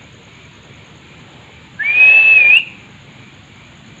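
A person whistling one held note just under a second long, sliding up at the start and flicking higher at the end: a whistle to call street cats to food.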